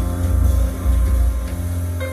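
Jazz band playing live: deep upright double bass notes under piano chords.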